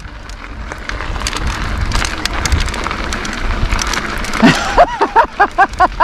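Mountain bike rolling fast down a gravel road: a steady rough noise of tyres crunching over gravel with many small clicks and rattles. About four and a half seconds in, the rider breaks into a quick run of laughter.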